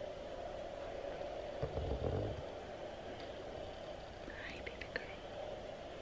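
Quiet room tone with a faint steady hum, broken by a brief low murmur about two seconds in and a few faint soft sounds near the end.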